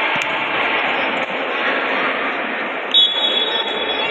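Spectators shouting and cheering throughout. About three seconds in, a referee's whistle gives one steady, shrill blast that runs on to the end.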